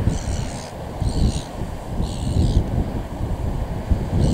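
Strong wind buffeting the microphone, a dense low rumble that rises and falls in gusts. Three brief high-pitched sounds sit over it in the first half.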